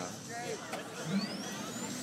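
Chrysler Turbine Car's A-831 gas turbine engine spooling up: a thin, high whine that rises steadily in pitch from about a second in, with crowd voices around it.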